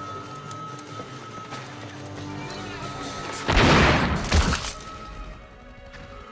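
Orchestral action-film music, broken about three and a half seconds in by a loud blast lasting about a second, with a second hit near its end.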